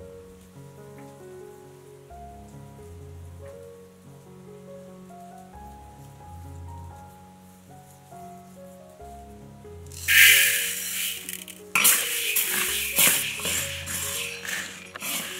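Soft instrumental background music. About ten seconds in, a loud rattling rush of dry mung beans, then a metal spatula scraping and stirring the beans around a wok.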